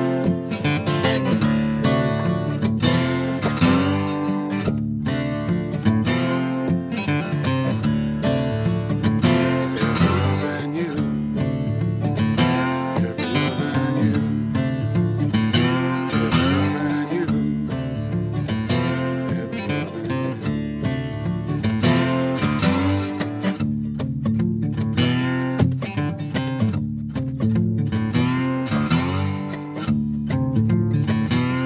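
Two acoustic guitars playing an instrumental blues passage between sung verses, picked and strummed steadily.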